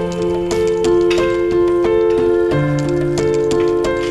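Background music: held melodic notes that change every half second or so, over a light, steady ticking beat.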